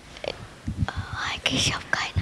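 A person whispering: soft, breathy speech without voice in the second half, with a few faint low knocks.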